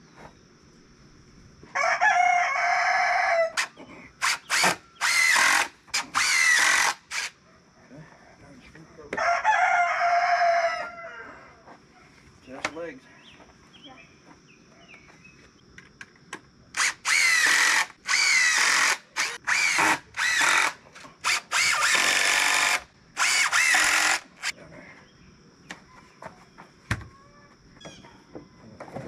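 Cordless drill driving screws into a wooden frame in a series of short bursts, a second or so each, bunched together about four to seven seconds in and again from about seventeen to twenty-four seconds in. A rooster crows twice, about two seconds in and about nine seconds in.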